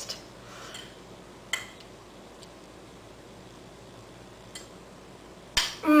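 A metal fork clinks once against a dessert plate about a second and a half in, with a couple of fainter ticks later, over quiet room tone. Near the end a woman hums "mmm" in approval as she tastes.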